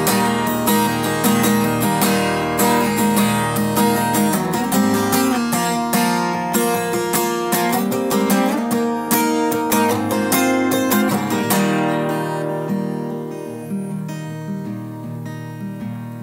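Acoustic guitar strumming chords in a steady rhythm. About twelve seconds in it drops to softer, sparser playing.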